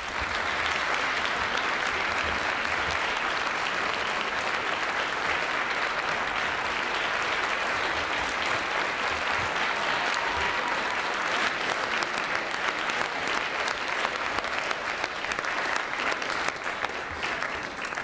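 Large audience applauding steadily in a standing ovation, dying down near the end.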